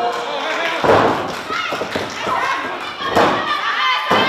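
A wrestler's body landing on the ring mat with a heavy thud about a second in, followed by a second thud a little after three seconds, amid high-pitched shouting voices.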